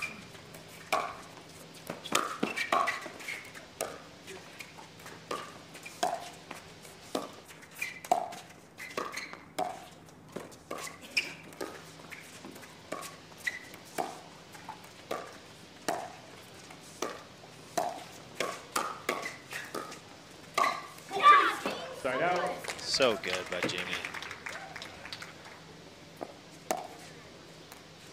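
Pickleball paddles striking a hard plastic ball in a long rally: a run of sharp, hollow pops, about one a second. About three-quarters of the way through comes a loud burst of voices, shouting and cheering, that is the loudest moment.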